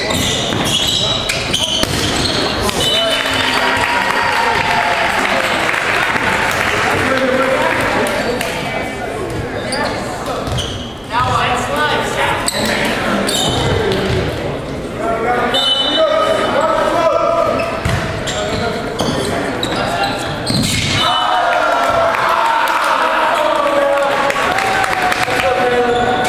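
Indoor volleyball play on a hardwood gym court: a ball being struck, sneakers squeaking at several points, and players and spectators shouting and calling out, all echoing in a large gymnasium.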